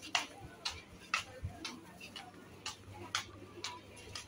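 Footsteps on a hard paved alley floor: sharp clicks at a steady walking pace, about two a second.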